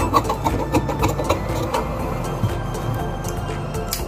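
Instrumental background music.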